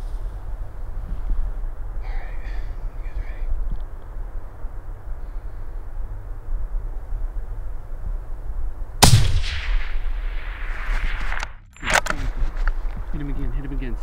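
A single rifle shot about nine seconds in, its report rolling away for a couple of seconds, with another sharp crack about three seconds later. A steady rumble of wind on the microphone runs underneath.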